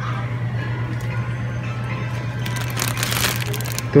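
Crinkling rustle of handled packaging, lasting about a second from about two and a half seconds in, over a steady low hum.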